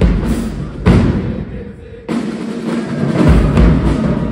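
High school marching band playing, with brass, sousaphones, drums and cymbals. The band thins out for about a second, then comes back in hard about two seconds in, with the deep bass rejoining about a second later.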